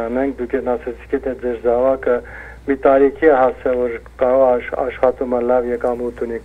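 Speech only: one person talking continuously, with short pauses between phrases.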